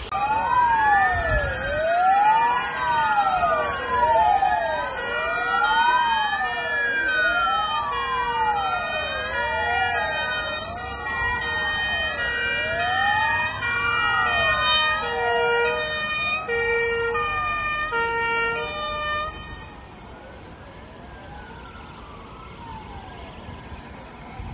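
Several emergency vehicle sirens wailing at once. Each rises and falls about every two seconds, over a steadier siren with stepped tones. Most of them drop away about twenty seconds in, leaving a single fainter wail.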